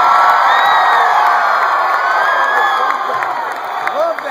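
Large concert crowd cheering after a song ends, with high voices rising and falling above the din. It eases off slowly near the end.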